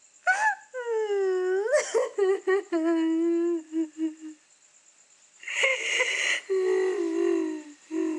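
A woman sobbing and wailing: long drawn-out cries whose pitch bends, breaking into short choked sobs, then a noisy gasping breath about two-thirds of the way in, followed by another wail.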